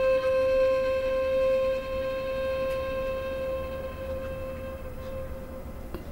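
Background music: a single held note that slowly fades away.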